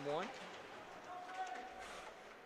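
A commentator's last word, then faint ice-rink background noise with a faint steady tone held for about a second in the second half.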